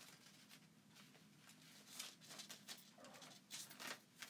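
Faint rustling and crinkling of a wet adhesive silkscreen transfer sheet being gently peeled apart where it has stuck to itself, with a few sharper crinkles in the second half.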